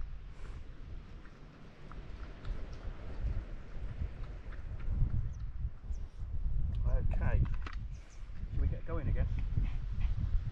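Wind buffeting the microphone in uneven gusts, with a few short high-pitched vocal sounds in the second half.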